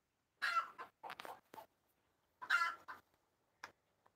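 A chicken clucking: about four short calls, spread over a few seconds.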